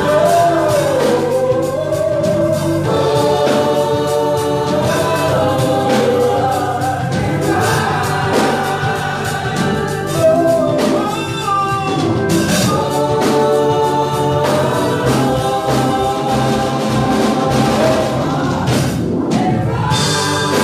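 Gospel choir singing with a man leading on a microphone, over steady keyboard accompaniment.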